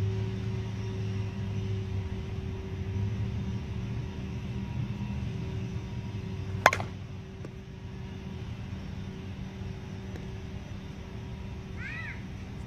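Brand-new Miken Freak Platinum 12 composite slowpitch bat striking a softball once, about seven seconds in: a single sharp crack with a brief ring, over a steady low hum.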